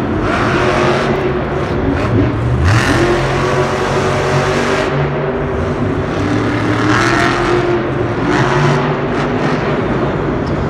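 Monster truck's supercharged V8 engine revving hard during a freestyle run, its pitch climbing and dropping again and again as the driver works the throttle over the jumps.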